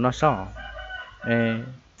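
A man's voice speaking, then drawing out one long even note about a second in, with a fainter high, steady call behind it just before.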